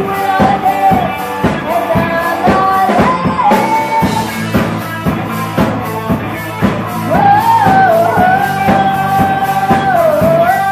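Live rock band playing: a woman singing over electric guitar, bass guitar and a drum kit, with a long held vocal note in the second half.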